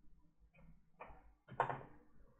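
Small clicks and knocks of a screwdriver and a Lenovo ThinkPad T440s laptop case being handled on a work mat during disassembly; the loudest is a short knock about a second and a half in.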